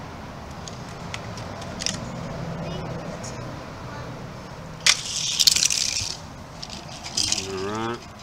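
Two die-cast toy cars let go from the gate with a click and rolling down a plastic drag-race track, a rattling rush lasting about a second. A short clatter follows a second or so later.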